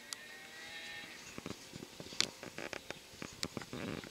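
Recorded cow mooing played through a small speaker built into a model railroad layout's barn scene, one call lasting about the first second. Sharp clicks and taps are heard throughout.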